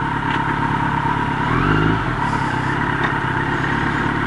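Motorcycle engine idling, heard through a microphone inside the rider's helmet, with a brief deeper swell about halfway through.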